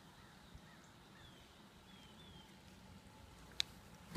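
Faint, short falling bird chirps over quiet background, with one sharp click near the end.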